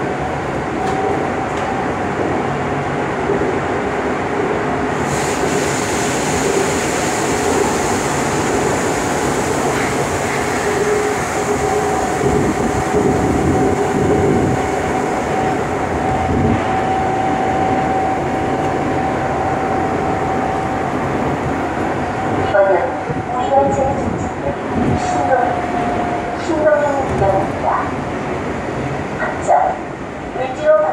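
Seoul Metro Line 2 subway train running, heard from inside the car: a steady whine over wheel and track rumble. From about three-quarters of the way through, the sound turns uneven with shifting tones as the train slows into the station.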